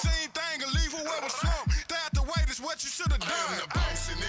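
Hip hop track with rapped vocals over deep 808-style bass notes that slide down in pitch.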